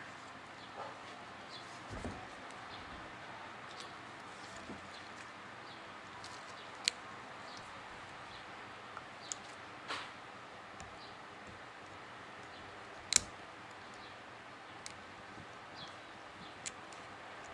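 Scattered sharp clicks and light taps of an Isuzu 4JA1 piston and its pin being handled and worked apart by hand, over a steady faint hiss. The loudest click comes a little past the middle.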